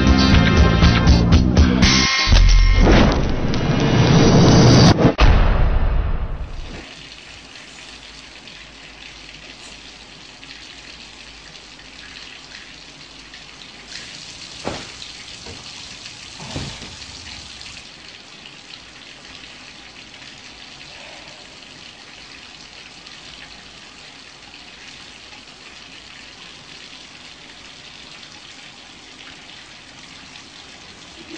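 Music with a loud rushing swell that cuts off about six seconds in, then a steady hiss of running water for the rest of the time, with two soft knocks about halfway through.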